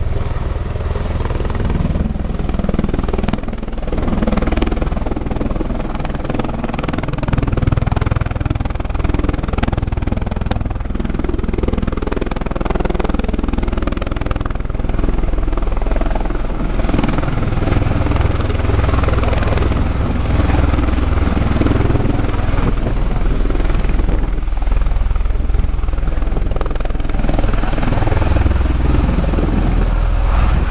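Bell Boeing MV-22 Osprey tiltrotor flying low in helicopter mode, its two proprotors and turboshaft engines running loud and steady with a heavy low rumble.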